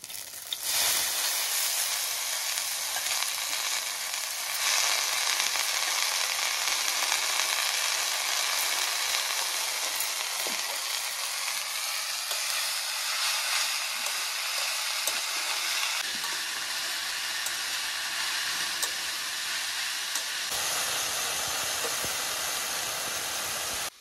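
Dry fish and leafy greens sizzling in hot oil in a metal kadai, a steady hiss with the occasional light scrape of a steel spatula as they are stirred.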